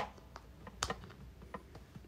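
A few sharp clicks and light taps of hands handling a small Santa figure and pushing a stick into its mouth, the loudest click a little under a second in.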